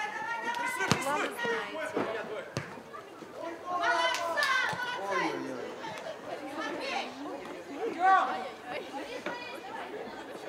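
Voices of players and onlookers calling out and chattering across a football pitch, with a loud call about eight seconds in. Two sharp knocks come about one and two and a half seconds in.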